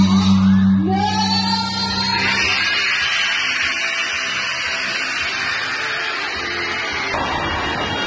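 Music playing while a large hanging gong, struck just before, rings and dies away over the first two seconds or so. From about two seconds in, a group's hand clapping joins the music.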